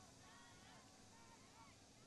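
Near silence: faint outdoor ambience with many short, overlapping chirping calls.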